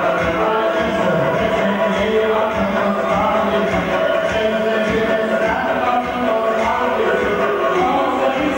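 Music with several voices singing together over a steady beat.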